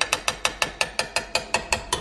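Mechanical clicking: a fast, even run of sharp clicks, about seven a second, like a ratchet.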